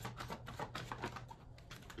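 Tarot cards being handled: a quick run of light clicks and flicks of card stock, thinning out near the end.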